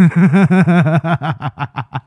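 A man laughing: a quick run of "ha-ha" pulses, about seven a second, that grows quieter and fades out toward the end.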